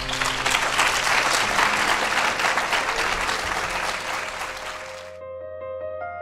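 An audience applauding at the close of a talk, with soft keyboard music playing underneath. The applause cuts off suddenly about five seconds in, leaving only the music.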